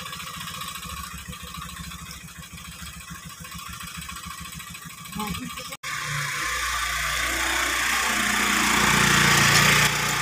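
Small motor scooter engine idling with a fast, even pulse. After a sudden cut about six seconds in, a louder, steady sound takes over and grows until near the end.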